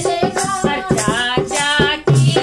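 Women singing a sohar, a north Indian folk song for a child's birth, together to a dholak drum beating a steady rhythm, with a small hand rattle shaking along.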